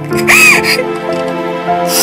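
Slow background music with long held tones, over which a woman sobs: a wavering cry that rises and falls about half a second in, and a breathy sob near the end.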